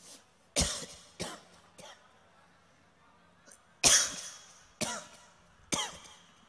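A man coughing in two bouts of three sharp coughs each, about a second apart.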